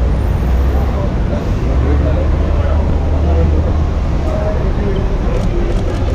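Busy airport curbside traffic noise: a steady low rumble of running vehicles, heavier for a couple of seconds in the middle, with indistinct voices of a close crowd.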